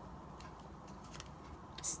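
Faint rustling and a few soft ticks from a hair bundle in its packaging being handled.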